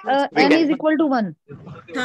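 Speech only: a person talking over an online video call.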